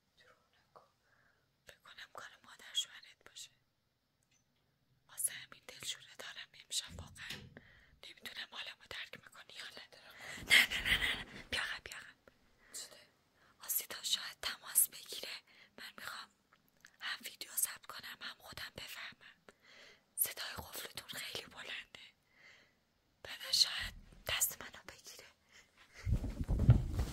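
A woman whispering, in short phrases broken by brief pauses.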